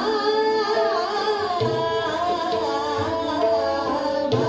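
A woman singing a Hindustani classical khayal in Raag Bhairav, gliding and ornamenting around held notes, over harmonium and a tanpura drone. A few deep tabla strokes come in, about one and a half and three seconds in.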